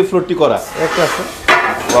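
Ceramic floor tiles clinking and clattering as they are handled, with two sharp, ringing knocks in the second half, over voices talking.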